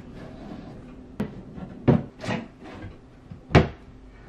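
A few short knocks and clunks from a vanity being put together, its parts set in place: four separate hits, the loudest near the end.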